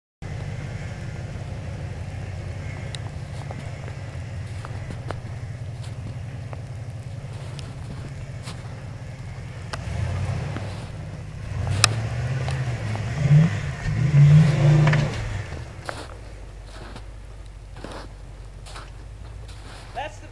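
Full-size Ford Bronco's engine running at a steady low rumble, then revving in louder, uneven surges for a few seconds about halfway through as it pulls through snow and muddy ruts, before dropping back to a quieter run.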